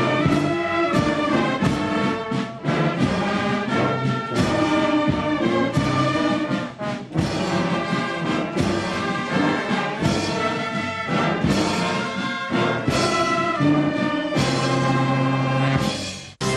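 A uniformed brass and drum band playing: full brass chords over drum beats, with a couple of brief breaks between phrases.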